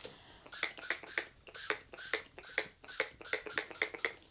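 Fine-mist setting spray bottle pumped rapidly, a quick run of short sprays at about five a second.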